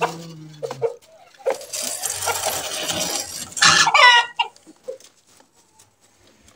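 Chickens clucking and squawking, with the loudest squawk about four seconds in.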